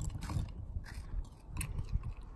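A clear plastic spoon stirring thick toothpaste slime in a small plastic jar: a series of light, irregular clicks and scrapes as the spoon knocks against the jar.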